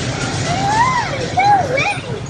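A child's high-pitched voice in a sing-song, its pitch sliding up and down through a few drawn-out sounds, over a steady background hum.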